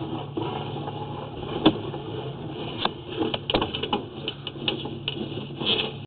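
Sewer inspection camera's push cable being pulled back out of a drain line, with irregular clicks and knocks over a steady low hum.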